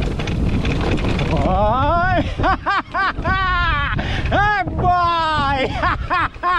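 Wind and tyre rumble from a mountain bike riding down a dirt trail, and from about a second and a half in, a rider's wordless high-pitched whoops and hollers that rise and fall repeatedly over it.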